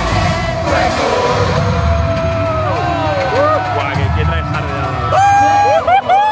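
Pop song played over the arena's loudspeakers: a woman singing over a backing track with a steady beat, ending in a loud held note just before the end.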